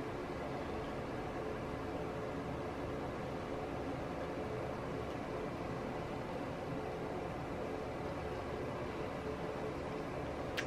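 Steady low hiss of room background noise with a faint, even hum, unchanging throughout.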